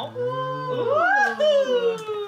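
Several people making a long, drawn-out "ooooh" of admiration as a gift is unveiled: a low voice first, then a higher voice rising steeply about halfway through and sliding slowly down.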